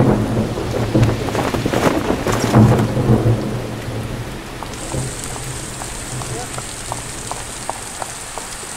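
Thunder rumbling over heavy rain, the rumble dying away after about three to four seconds and leaving steady rain with scattered drips.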